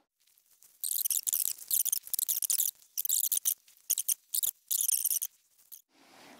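High-pitched scratchy bursts in several short clusters with abrupt silent gaps, from hands mounting a small star tracker onto a camera tripod.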